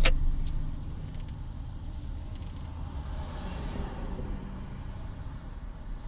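Low, steady rumble of street traffic, with one vehicle swelling past and fading about three to four seconds in.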